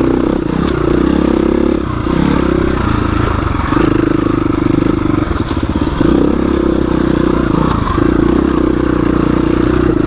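KTM 350 EXC-F dirt bike's single-cylinder four-stroke engine pulling along rough single track, the engine note swelling and easing every second or two as the throttle is opened and closed.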